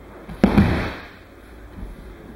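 A thrown aikido partner landing on the mats: a sharp slap about half a second in as the body hits, then a brief rush of the body and gi rolling across the mat.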